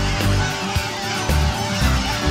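Background music with a steady, moving bass line.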